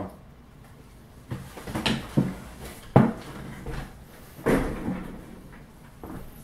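Several short, irregular knocks and clunks, about six in five seconds, the loudest about three seconds in.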